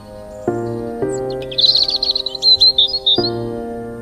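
A songbird chirping a quick run of high notes from about one and a half to three seconds in, over soft background music of sustained chords that change a few times.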